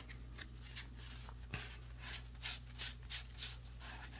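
A deck of game cards being picked up and handled, giving a series of faint papery clicks and rustles.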